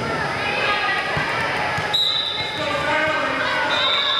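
Indoor volleyball on a hardwood gym floor: the voices of players and spectators echo in the hall, a ball thuds, and a referee's whistle sounds twice. The first is a short blast about halfway, ending the rally; the second, longer blast near the end signals the next serve.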